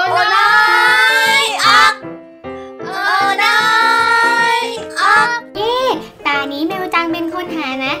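A high, childlike voice sings a children's song over backing music: two long held notes, then quicker sung phrases from about five seconds in.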